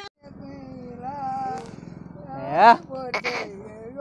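An elderly man singing unaccompanied in a drawn-out, wavering voice, with a loud rising note about two and a half seconds in.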